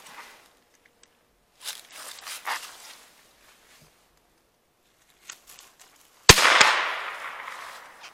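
A 26.5 mm flare gun with a steel launch insert fires a crossbow bolt on a .22-calibre Ramset powder load. There is one sharp report about six seconds in, with a long fading echo, and a second, smaller crack a moment after it. Faint clicks and rustling from handling the launcher come before the shot.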